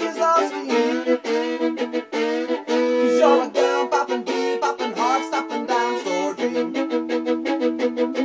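A violin playing a fast instrumental fiddle break of short, quickly changing bowed notes, with a few notes slid into.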